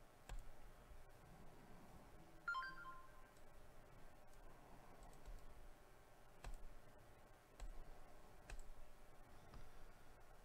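Faint, widely spaced computer mouse clicks, single clicks a second or more apart. A brief electronic chime sounds about two and a half seconds in.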